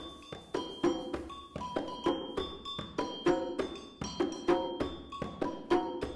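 Percussion music: hand-drum strokes in a steady repeating rhythm, mixed with short ringing pitched strikes.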